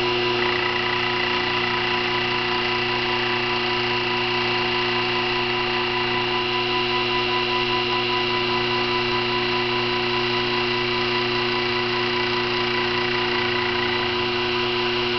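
Sherline 5400 CNC mini mill running: a steady motor whine made of several constant tones from the spindle and the table's stepper drive, as the fly cutter spins and the table feeds a Delrin block under it to plane it flat.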